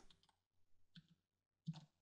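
Near silence with a few faint clicks of computer keyboard keys being pressed.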